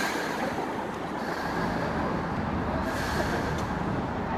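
Steady rumble of traffic, an even noise with no breaks.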